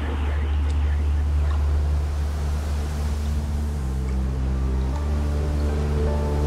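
Sustained low synth bass chord with no kick drum, the drumless breakdown of an uptempo hardcore track. The chord shifts pitch about four seconds in and shifts again about a second later.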